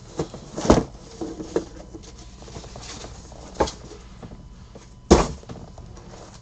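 Shrink-wrapped cardboard trading-card hobby boxes being lifted out of their shipping case and set down on a table: a few knocks, the loudest about five seconds in, with light handling rustle between.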